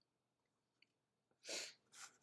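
Near silence, then one short, sharp breath noise about one and a half seconds in.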